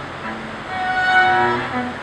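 A violin and a cello playing a classical piece together, bowing long held notes.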